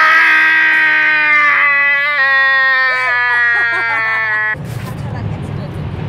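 A man's long, drawn-out shout held for about four seconds, slowly falling in pitch, with another voice briefly joining. It cuts off suddenly about four and a half seconds in, giving way to the low, steady rumble of road noise inside a moving car.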